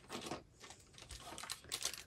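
Faint rustling and crinkling of small plastic zip-top bags being handled, in several short bursts with light clicks, the busiest near the end.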